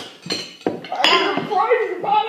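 Clinks of china tableware, a teacup and saucer knocking, a couple of times near the start, followed by a voice from about a second in.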